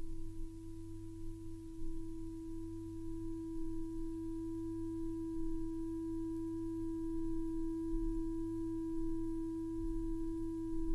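Electroacoustic music playing from a vinyl record: one steady, pure electronic tone held without change, with fainter higher tones above it and a low hum underneath.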